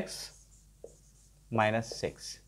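Marker pen writing on a whiteboard: the tip scratches softly in short strokes. A man's voice says a word about one and a half seconds in.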